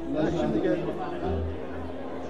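Chatter of many voices in a crowded hall, with music running quieter underneath; a low bass note comes in a little past halfway.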